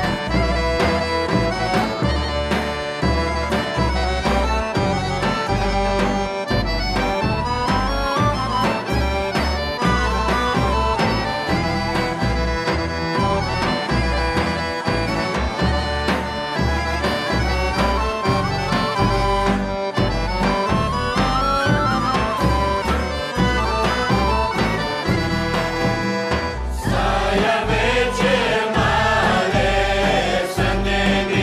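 Bulgarian folk music: bagpipes (gaidi) over a steady beat on large tapan drums. About 27 seconds in, a choir of women's voices starts singing.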